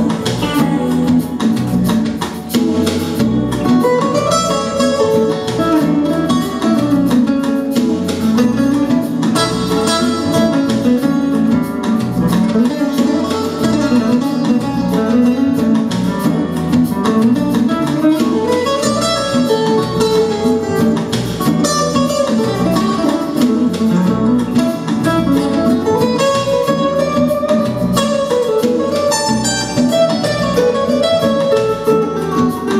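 Electric guitar playing an instrumental solo in a pop song: a single-note melody with notes that slide and bend.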